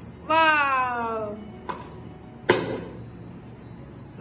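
A high voice gives one long, falling 'ooh', like a child's wail. About a second later come two sharp clicks or snaps, and the second is the loudest sound.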